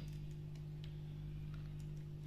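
Steady electrical hum from the FLECO F-232BT amplifier through its speaker, a low buzz with a stack of overtones. This is the amplifier's built-in hum, still present after its driver was upgraded to an N-Force 200 board.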